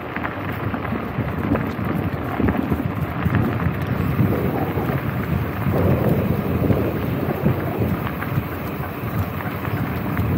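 Wind buffeting a camera microphone behind a furry wind muff, mixed with bicycle tyres rolling over a dirt and gravel track: a steady low noise with scattered small clicks from the gravel.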